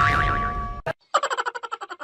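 Music with a held tone cuts off with a click about a second in. It is followed by a cartoon 'boing' sound effect: a fast wobbling pulse, about a dozen a second, that fades away.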